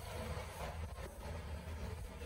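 Faint steady low rumble of background noise, with a few soft clicks.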